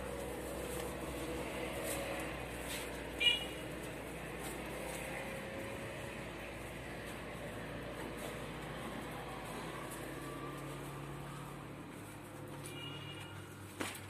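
Quiet, steady background ambience inside a plastic greenhouse, with one short high chirp about three seconds in and a few more short high chirps near the end.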